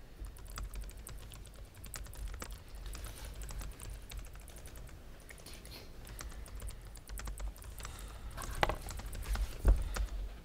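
Typing on a computer keyboard: a loose run of soft key clicks, with two louder knocks near the end.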